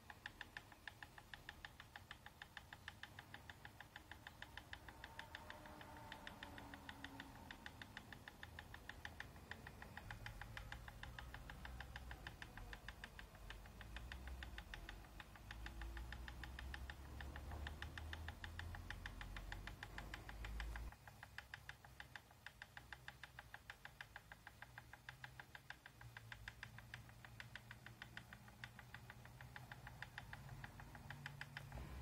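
Faint, rapid, evenly spaced ticking from a motorized rotating display turntable as it slowly turns.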